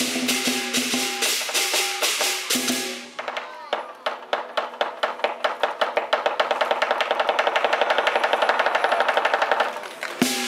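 Chinese lion dance percussion band: drum, cymbals and gong beating the accompaniment, the gong's ringing tone under the cymbal crashes. From about three seconds in the beats quicken into a roll of about six strikes a second that stops just before the end.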